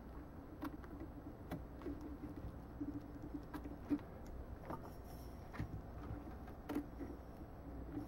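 Small scissors snipping and handling a tape-and-plastic-wrap pattern: scattered light clicks and rustles, with a faint steady hum beneath.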